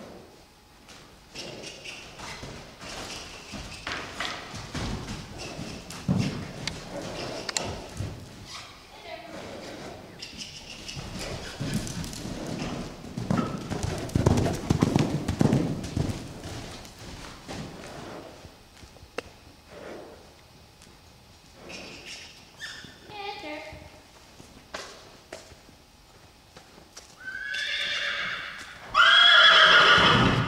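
A loose horse's hooves beating on the arena's sand footing as it moves around at liberty, loudest when it passes close about halfway through. Near the end the horse whinnies loudly.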